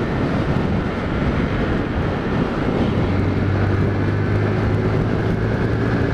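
Honda CG Titan motorcycle's single-cylinder engine running at steady cruising speed, under heavy wind rush on a helmet-mounted camera. About halfway through a steadier low hum grows stronger.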